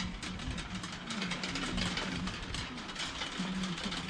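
A row of large metal prayer wheels turned by hand, clattering and rattling as they spin on their spindles. Under it, a low voice chants in long held notes.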